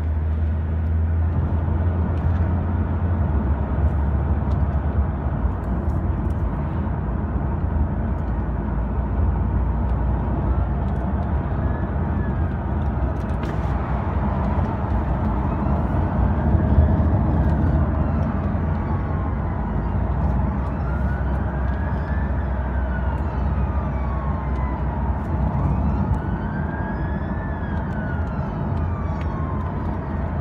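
Steady low road and engine rumble inside a car following a fire engine, with the fire engine's wailing siren faintly heard from about ten seconds in, slowly rising and falling every few seconds.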